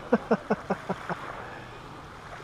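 A man chuckling softly: a run of short 'ha' pulses, about five a second, that fade away a little over a second in.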